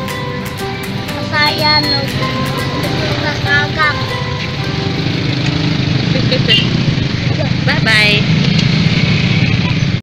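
A voice and background music over street traffic noise, the rumble of vehicles growing louder in the second half.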